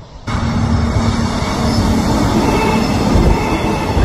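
Electric passenger train passing close by: a loud, steady rush of wheels on rails with a low, steady hum underneath. It starts abruptly just after the beginning and cuts off suddenly at the end.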